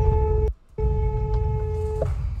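A car horn sounding in two blasts of one steady pitch, a short one and then a longer one of about a second, over the low rumble of road noise inside the car.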